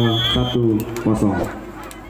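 A man's voice giving live sports commentary, with a brief high steady tone in the first half second.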